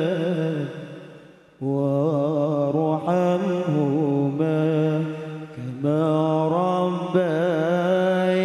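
A man's solo voice sings an Arabic devotional chant into a microphone in long, slow phrases ornamented with wavering, melismatic turns. About a second and a half in, the voice fades almost to nothing, then a new phrase starts at full strength; there is another short dip about five and a half seconds in.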